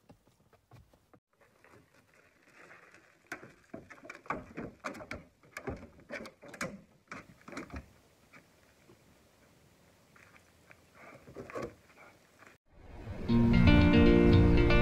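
Irregular knocks, clicks and rustles of handling at an open car door, loudest for a few seconds in the first half and sparser after. Near the end the sound cuts to loud guitar music.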